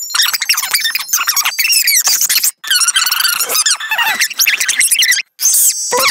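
Cartoon soundtrack played back at four times normal speed, its voices and music sped up into rapid, high-pitched squeaky sounds, cut by two brief dropouts, one about halfway through and one near the end.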